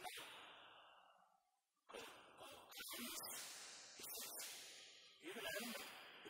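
A man speaking quietly in short, breathy phrases, with a brief pause between them about a second and a half in.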